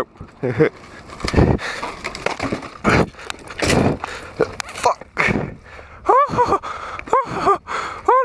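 Mountain bike and rider crashing down a steep grass bank by a stone wall: a series of loud irregular bumps and crashes as the bike and rider tumble. From about six seconds in, the rider gives a run of short, breathless pitched gasps.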